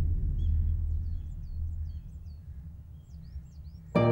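A deep, low rumbling drone from the dramatic background score, fading slowly, with faint bird chirps high above it.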